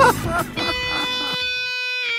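Radio station jingle starting: after a brief bit of voice, a single steady note is held from about half a second in.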